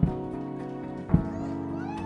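Soft background music of sustained chords with a low thump about once a second, and a few short sliding tones over it.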